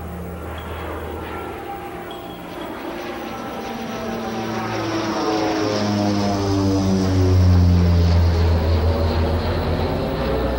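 An airplane flying past, its engine drone growing louder to a peak a little after the middle and dropping in pitch as it passes.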